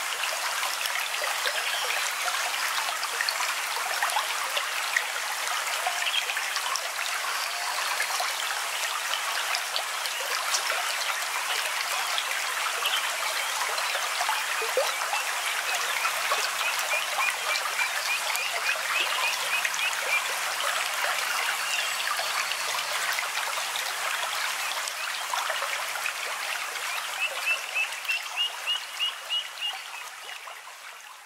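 Water flowing and trickling steadily in a stream. A rapid chirping call of about five pulses a second comes in twice, once midway and again near the end.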